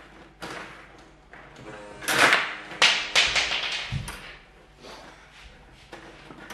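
Stiga table hockey game in play: player rods sliding in and out of the table's sleeves and the plastic players and puck knocking and clattering in irregular bursts, busiest a couple of seconds in, with a dull thump about 4 s in.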